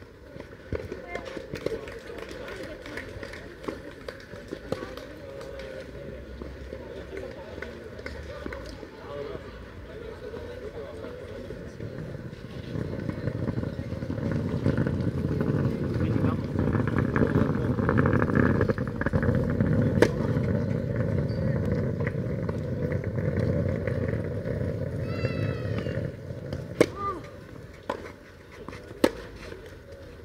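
People talking in the background, louder through the middle, with a few sharp tennis-ball strikes off rackets: one about two-thirds in and two near the end.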